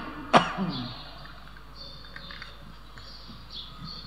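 A man clearing his throat once, briefly, about a third of a second in, followed by a pause of quiet room tone.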